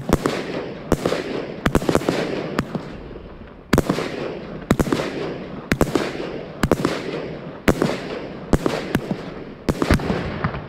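Night Owl Fireworks NO-100X-D003 firework going off: a string of sharp bangs, one or two a second and often in close pairs, with a crackling hiss between them. There is a short lull about three seconds in.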